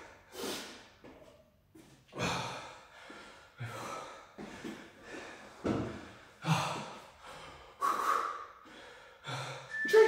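A man breathing hard and fast after a set of exercise to failure: short, sharp, gasping breaths about once a second, with a brief lull near the start.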